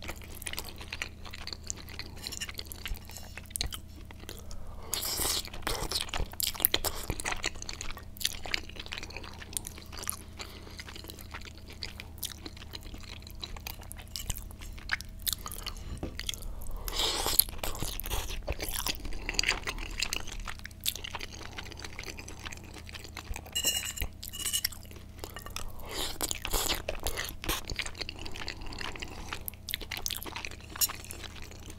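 Close-miked chewing of cheesy spaghetti bolognese: many small wet clicks and mouth sounds, with a metal fork twirling pasta against the plate. It comes in busier stretches several times.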